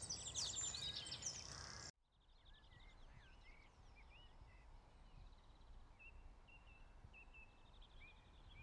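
Birds singing outdoors: fast, high trilling songs for about two seconds, then an abrupt cut to a much fainter background of scattered chirps and a thin high trill.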